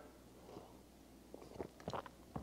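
Faint sipping and swallowing of thick, frothy hot chocolate from a mug, with a few small mouth clicks in the second half.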